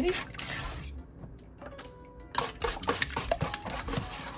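Wire whisk beating egg custard in a stainless steel bowl: a fast run of clinks and scrapes against the metal, pausing for about a second near the middle before picking up again.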